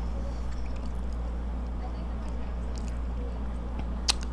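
Quiet, soft chewing with faint mouth clicks, over a steady low electrical hum.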